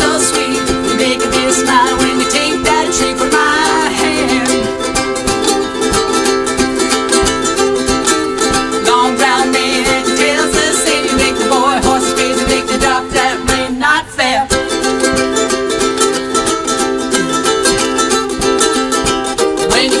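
Two ukuleles strumming an upbeat song together in a steady rhythm, dipping briefly about two-thirds of the way through; singing comes back in at the very end.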